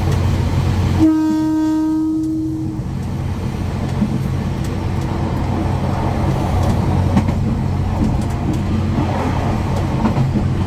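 A train horn sounds one long blast about a second in, lasting about two seconds, over the steady low rumble of the moving train.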